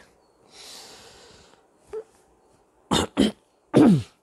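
A man breathes in audibly, then coughs three times about three seconds in, the last cough the loudest, with a voiced sound that drops in pitch.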